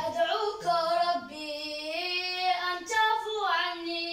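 A boy's voice singing an unaccompanied Arabic madih (devotional praise song) line, with long held notes that bend and ornament in pitch.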